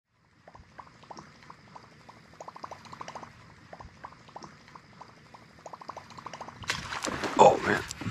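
Whopper Plopper topwater lure being reeled across the surface, its spinning tail propeller making a quick run of plops and gurgles. About 7 s in a fish strikes it with a loud splash.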